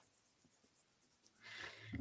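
Near silence, with a faint noise coming up about a second and a half in.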